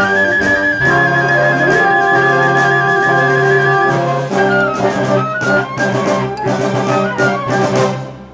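Wind ensemble with saxophones, euphonium, bass clarinet, trombones, flute and mallet percussion playing a held, full brass-and-woodwind chord. About four seconds in it turns to short, accented notes punctuated by percussion hits, and breaks off sharply at the end.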